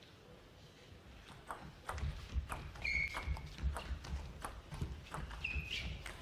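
Table tennis rally: the plastic ball clicking off the bats and the table in quick succession, starting about a second and a half in, over low thuds of footwork. Two short shoe squeaks on the court floor come about halfway through and again near the end.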